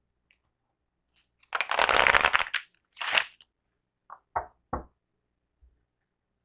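A deck of cards being shuffled by hand: a rustling shuffle of about a second, a shorter second shuffle, then three short quick snaps of the cards.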